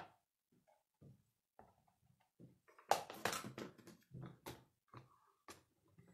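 Quiet handling sounds of stamping: scattered soft knocks, then a cluster of quick taps and rustles about halfway through as a clear stamp plate is pressed onto an ink pad, followed by a few more single knocks.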